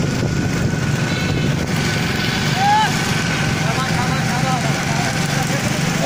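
Small motorcycle engine running steadily at cruising speed, with a brief call from a voice about halfway through.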